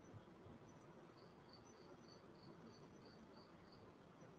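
Near silence: faint room hiss with a faint high chirp repeating evenly, about three times a second, from about a second in.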